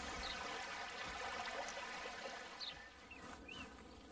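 Shallow stream trickling, slowly fading down, with a few faint short bird chirps.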